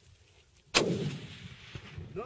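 A single rifle shot about three-quarters of a second in, its report rolling away over about a second.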